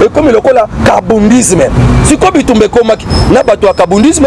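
A man talking continuously to the camera, with a low rumble underneath.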